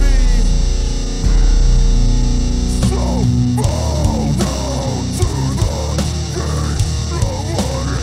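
Metalcore band playing live with heavy distorted guitars, bass and drums. A big low chord hits at the start and again just after a second in and rings out, then from about three seconds in the drums pick up with quick, repeated cymbal and snare hits under the guitars.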